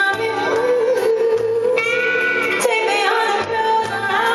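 A woman singing a slow R&B ballad live into a microphone while playing a keyboard, with band accompaniment and a bass line underneath.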